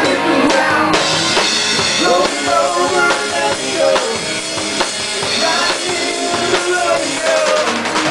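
Live rock band playing: drum kit with a steady beat and an electric bass guitar, with a voice singing over them.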